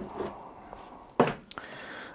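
Aluminium block being lifted off a lathe's toolpost by hand: faint rubbing and handling noises, with one brief louder noise a little after a second in.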